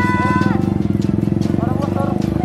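Motorcycle engine running close by, an even, rapid low pulsing that holds steady throughout. A high held vocal cry sounds over it in the first half second.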